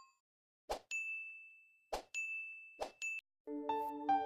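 Sound effects of a subscribe-button animation: a sharp click followed by a high, steady electronic ding, then a second click and ding with a further click on top. Soft sustained music begins near the end.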